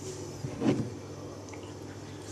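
A single short sip from a mug of tea, a little under a second in, over a steady low hum of room background.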